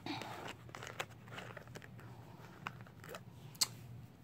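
Faint handling noises: light rustling of paper and scattered small clicks, with one sharp click a little before the end.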